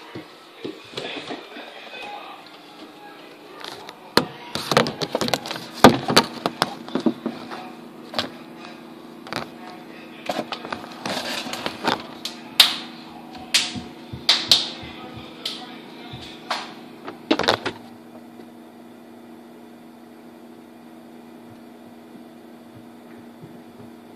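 Camera handling noise as it is pushed into a refrigerator: a run of sharp knocks and clicks of the camera bumping plastic shelves and bins, over a steady low refrigerator hum. The knocks stop about three quarters of the way through, leaving only the hum.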